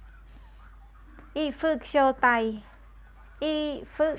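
Speech only: a voice saying a short phrase of several syllables, then starting it again near the end.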